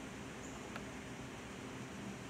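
Low, steady room tone with a faint hum and a single faint tick a little under a second in.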